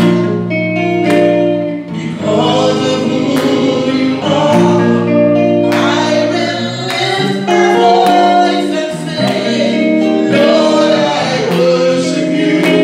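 A woman singing a gospel song into a handheld microphone, holding long notes, with instrumental accompaniment.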